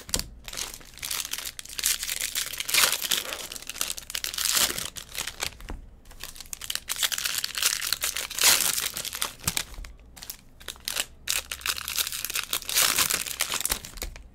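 Baseball card pack wrappers crinkling and tearing open by hand, with the cards handled and set down on a stack, in irregular bursts of crackling.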